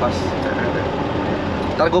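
Classic Fiat 500's small air-cooled two-cylinder engine running steadily while driving, with road and wind noise, heard inside the cabin with the canvas roof open.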